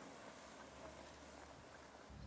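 Near silence: faint outdoor background noise with a few faint ticks.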